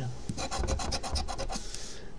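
Coin scraping the coating off a paper scratch-off lottery ticket in a quick run of short back-and-forth strokes.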